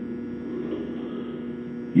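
Steady low electrical hum with a faint background hiss, unchanging throughout.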